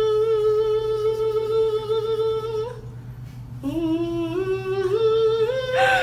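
Harmonica played: one long held note, a short break, then a run of notes stepping upward, ending with a brief breathy burst.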